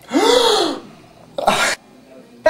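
A loud, breathy gasp of shock with a voiced cry that rises and falls in pitch, then a second, shorter gasp about a second later.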